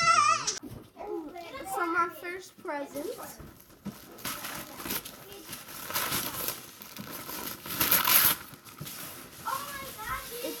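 Wrapping paper being ripped off a large gift box, a few seconds of tearing and crinkling with the loudest rips about six and eight seconds in.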